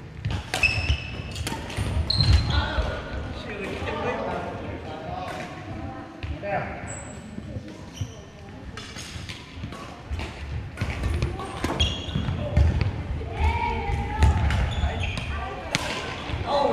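Badminton play on a hardwood gym floor: sharp racket strikes on the shuttlecock, short high-pitched sneaker squeaks and footfalls, with voices in the echoing hall.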